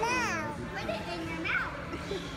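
A young child's high-pitched voice: a short squeal sweeping up and down right at the start, then a brief higher cry about a second and a half in, over a steady low background hum of a restaurant.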